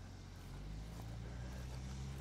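Faint tractor engine running steadily as the tractor drives in carrying a mounted plough; its note rises slightly and grows a little louder about half a second in.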